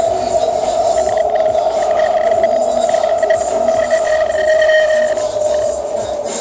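The inside of a moving rapid-transit train car: a loud, steady, high-pitched whine from the train over a low rumble, sinking slightly in pitch near the end.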